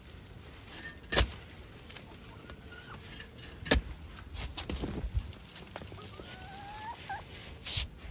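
A steel shovel blade wedged at the base of a banana pup strikes and pries into the roots and soil, with two sharp knocks about a second in and near the middle, then a few lighter ones. Near the end a chicken hen gives a drawn-out rising call.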